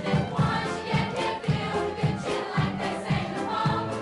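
A chorus of young voices singing a lively stage-musical number over a band backing, with a bass line pulsing on a steady beat.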